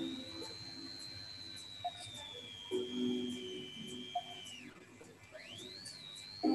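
Quiet countdown-timer background music: a few low sustained notes with gaps, over a thin, high, steady tone that slowly sinks, drops away near the end and glides back up. Faint regular ticks run underneath.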